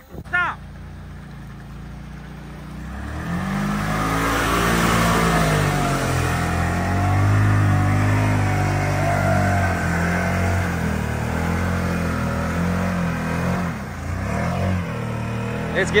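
Off-road mud buggy's engine revving hard under load as its tires churn through a mud hole. It starts low, climbs to high revs about three seconds in and holds there with the pitch wavering, easing off briefly near the end.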